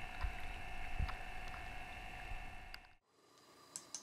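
Small air pumps on aerosol samplers standing in lake water, running with a steady whine, over lapping water with a few soft low thumps. About three seconds in it cuts to a much quieter room with a few faint clicks.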